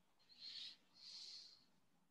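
A person breathing close to a microphone: two short, soft breathy hisses about half a second apart.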